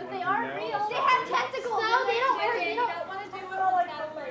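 Speech only: several voices, children among them, talking and calling out over one another.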